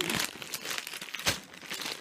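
Crinkling of a plastic bag of cinnamon hard candy being handled and shaken, with a sharp crackle a little past the middle. The rustling dies down near the end as the bag is set down.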